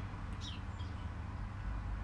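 A few short, faint bird chirps, each a quick falling note, over a steady low rumble of outdoor background noise.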